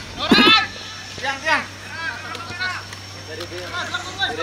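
People shouting calls across an open football field during play. The loudest is a long high call about a third of a second in, followed by several shorter calls.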